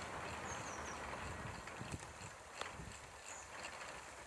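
Faint running noise of a small homemade wind turbine, a 48 V e-bike hub motor geared to fibreglass blades, spinning in light wind, with a few faint ticks or knocks. It is the noise that the owner asks listeners to pick out, and he suspects worn bearings.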